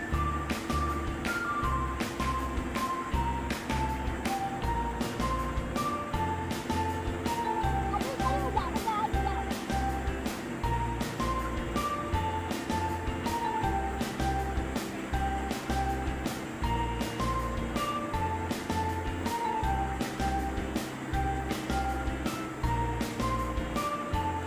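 Background music with a steady beat, a repeating bass line and a simple stepping melody.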